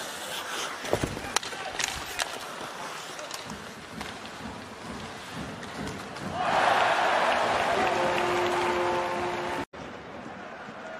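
Ice hockey arena game sound: crowd noise with a few sharp stick-and-puck clacks. About six seconds in the crowd suddenly rises into loud cheering that holds until a cut near the end, with steady tones sounding over it.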